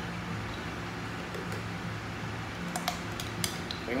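A metal spoon scraping thick tempoyak paste out of a plastic bottle, with a few light clicks and taps of the spoon against it, over a steady low hum.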